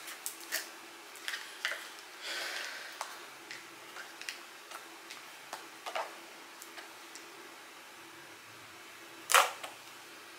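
Fingers handling a plastic jar of sugar scrub: scattered small clicks, taps and light rustles as the lid is picked at and a seal is peeled off. There is a louder brief rustle about nine seconds in.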